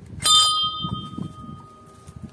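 A hanging brass bell rung once by hand: one sharp strike about a quarter second in, then a clear ringing tone that slowly fades.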